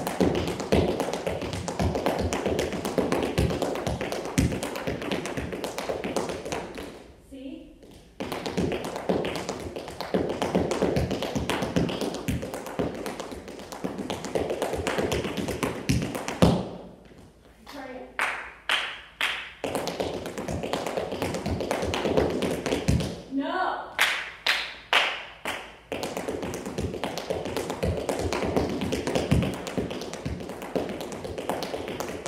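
Tap shoes' metal taps striking a hard studio floor in fast, continuous runs of a repeated tap step, as the step is pushed to top speed. The runs are broken by a few short pauses, and some slower, spaced taps come around two-thirds of the way through.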